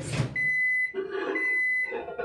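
Microwave oven beeping as its 30-second heating cycle ends: two high, steady beeps, each about half a second long, a second apart.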